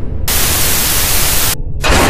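Loud burst of TV-style static hiss, about a second and a quarter long, cutting off suddenly, then another rush of static starting near the end, over a steady low rumble: the glitch of a video message coming up on a monitor.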